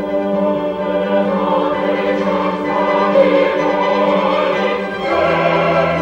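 Mixed choir of men and women singing a sustained classical choral piece with instrumental accompaniment; new low bass notes come in about five seconds in.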